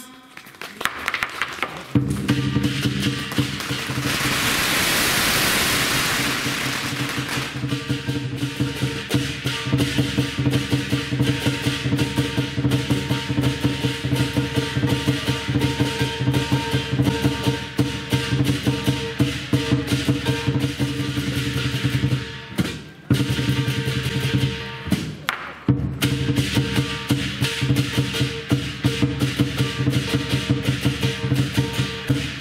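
Lion dance percussion: a large Chinese drum beaten in fast, even strokes, with cymbals and gong ringing over it. It starts about two seconds in and breaks off briefly twice near the end.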